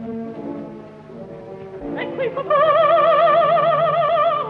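An opera orchestra holds soft, low sustained chords. About two seconds in, a woman's operatic voice sweeps up and holds a loud high note with a wide vibrato over the orchestra.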